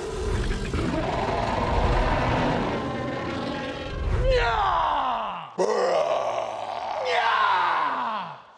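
The Predator creature's roar from the film: a long, rough growl over a low rumble. Then, from about four seconds in, two men imitate it, with three loud yells that each slide down in pitch.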